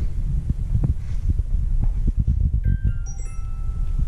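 A quick run of short bell-like chime notes at several pitches about two and a half seconds in, over a constant low rumble with soft knocks.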